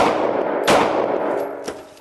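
Two 9mm pistol shots fired at point-blank range into a bullet-resistant backpack insert, about two-thirds of a second apart, each trailing off in a long reverberant tail.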